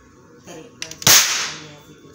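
Toy matchstick gun firing once: a single sharp crack about a second in, trailing off in a hiss over most of a second.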